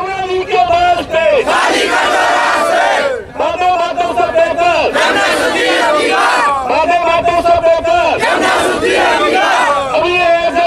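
A large crowd of schoolchildren chants slogans in unison, led by a man at the front, in repeated phrases of about a second and a half with short breaks between them.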